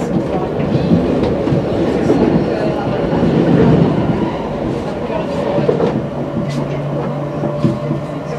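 MI84 RER A electric multiple unit heard from inside the carriage while running: continuous wheel-on-rail rumble with scattered clicks from the track. A steady low hum comes in about five and a half seconds in.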